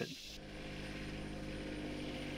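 A vehicle engine running steadily at an even pitch.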